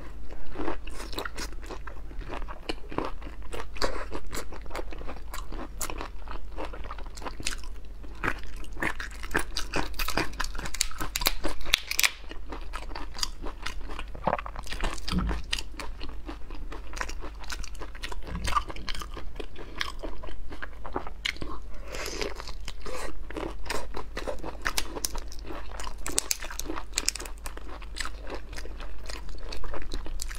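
Close-miked mouth sounds of a person biting and chewing raw black tiger prawn meat: a dense, irregular run of wet clicks and smacks.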